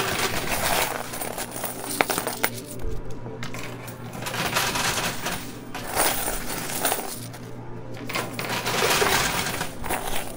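Quarters clattering and clinking in a coin pusher machine as its sliding shelves push the piles forward and coins spill over the edges. The clatter swells and eases in waves every few seconds.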